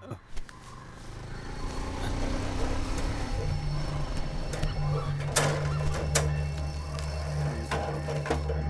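Low background-score drone swelling in and holding steady, deep tones, with a couple of sharp clicks about halfway through.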